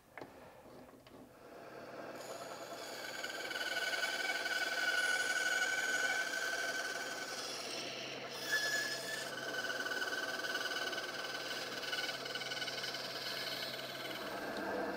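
Delta ShopMaster benchtop bandsaw running and cutting wood, a steady whine with a low hum that builds over the first few seconds as the blade works through the seat pieces.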